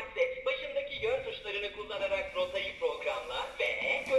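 The Clementoni Doc talking robot speaking a message in a high voice through its small built-in speaker. The message follows a missing mission card, as the presenter says right after.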